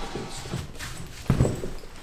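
A few soft knocks and rustles, with one dull thump just over a second in: indoor handling noise.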